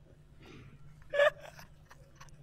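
A man's short, sharp gasping laugh about a second in, with a fainter breathy intake of breath before it.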